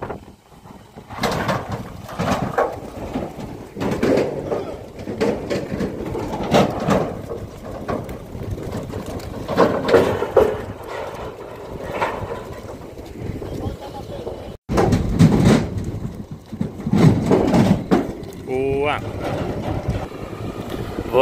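Heifers being unloaded from a cattle truck trailer: irregular knocks and bumps of hooves on the trailer floor and gate, with people's voices calling.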